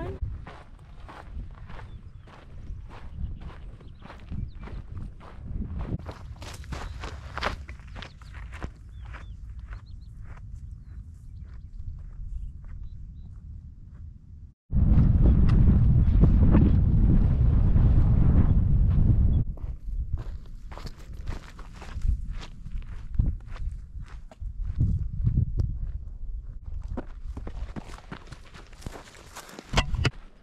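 Footsteps of a hiker walking a dry dirt trail, a steady run of short steps. About halfway through, after a brief cut-out, a loud low rumble covers the steps for about five seconds, then the steps come through again.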